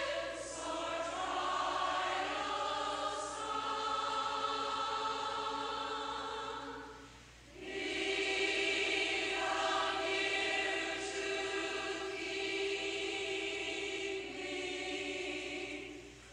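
A congregation singing a hymn a cappella, voices held on long notes, with a short break between phrases about seven and a half seconds in.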